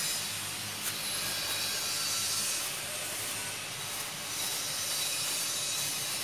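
Low, steady scraping and rubbing of firm homemade soap as a gloved hand works a cut round piece loose from the surrounding block, over a constant hiss.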